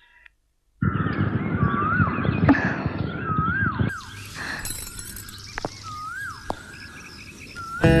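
Film soundtrack noise: a rushing rumble comes in just under a second in and eases off about four seconds in. Over it a short rising-then-falling whistle-like tone repeats about every second and a half.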